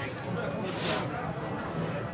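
Faint, indistinct talk over a steady background noise, with no clear voice in front.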